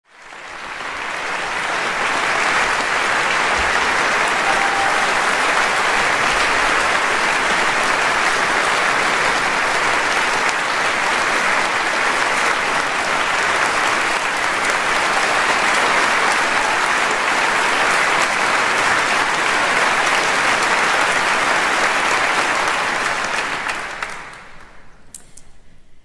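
Concert hall audience applauding steadily. The applause swells over the first two seconds and dies away near the end.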